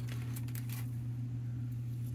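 Sleeved trading cards being handled and set down on a wooden table: a few faint taps and rustles in the first second, over a steady low hum.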